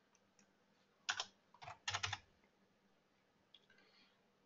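A few keystrokes on a computer keyboard: one about a second in, then a quick run of three or four keys just before two seconds, as a 200-day moving average is typed into charting software.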